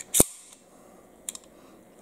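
Steel slide of a 1911 pistol worked by hand to check that the chamber is empty: two sharp metallic clicks close together right at the start, the second louder, then a faint click a little past the middle.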